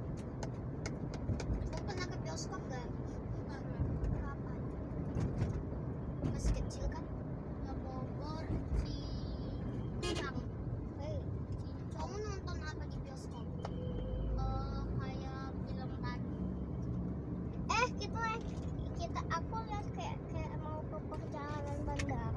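Steady road and engine rumble heard inside a moving car's cabin, with voices talking now and then over it.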